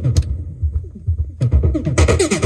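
Arturia MicroBrute analog synthesizer playing a fast, repeating techno-style bass pattern while its knobs are twisted live. A quarter second in, the bright upper part of the sound drops away, leaving a thinner low pulse, and it cuts back in suddenly about a second later.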